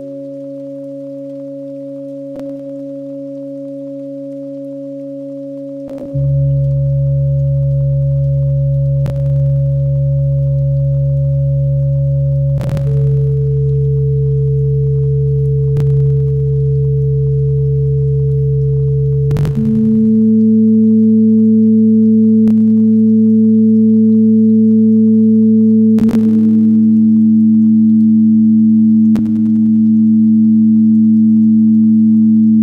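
Ambient electronic music of steady, pure sustained tones that form slow chords, shifting to new pitches about every six or seven seconds and getting louder as it goes. A faint click sounds every three seconds or so.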